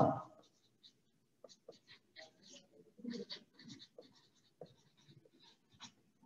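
Marker pen writing on paper: a quick run of faint, short scratching strokes.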